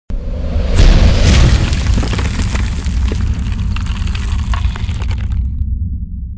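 Intro sound effect: a deep boom that starts suddenly, swelling about a second in, then a long low rumble with crackling and snapping over it as the stone-texture logo cracks open. The crackling stops shortly before the end while the rumble runs on.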